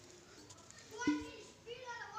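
Faint children's voices talking in the background.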